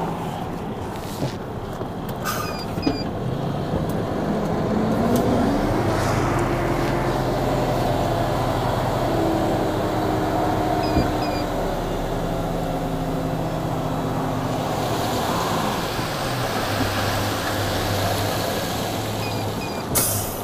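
Tipper lorry's diesel engine revving up a few seconds in and held at raised revs to drive the hydraulic tipping gear, then dropping back to a lower idle near the end.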